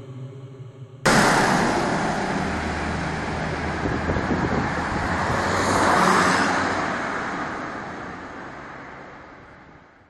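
Music fading out, then a loud rushing, rumbling noise that cuts in abruptly about a second in. It swells around six seconds and fades away.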